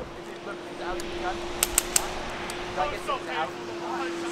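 Airsoft guns firing on the field: three sharp shots in quick succession a little over a second and a half in, over distant voices and a steady faint hum.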